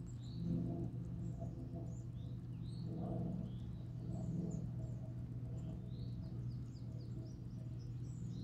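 Small birds chirping repeatedly, short high chirps scattered through the whole stretch, over a steady low hum.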